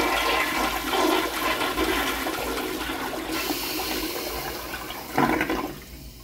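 American Standard Afwall toilet bowl flushing: a steady rush of water swirling down the drain that slowly eases off. A brief louder surge comes near the end, then the sound drops quieter as the bowl refills.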